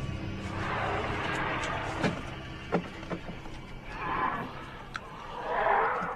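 Sound-designed creature cries, three rasping swelling calls (about a second in, just past four seconds, and near the end), over a low background score with a few sharp clicks between them.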